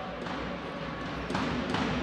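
Sports-hall ambience with a faint crowd murmur. A volleyball bounces twice on the wooden court floor, about a second and a half in.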